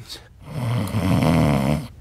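A sleeping cartoon character snoring: one long, rattly snore starting about half a second in and lasting about a second and a half.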